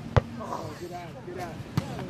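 Two smacks of a volleyball being struck or hitting the ground: a loud one just after the start and a lighter one near the end, with faint voices behind.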